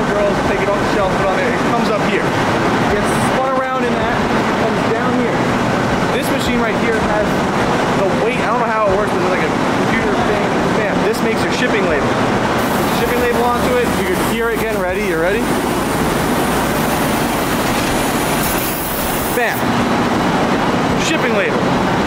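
Warehouse conveyor machinery running steadily, with voices talking over it.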